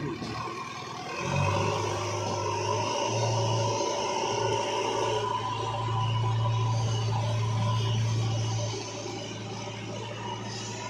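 JCB 3DX backhoe loader's diesel engine running steadily as the machine moves over rough ground, a low hum that grows louder about a second in, dips briefly a couple of times, and eases off near the end.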